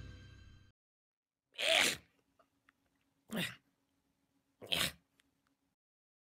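A music sting fades out, then three short, breathy cat vocal bursts come about a second and a half apart, standing in for the lion's roars of an MGM-style logo.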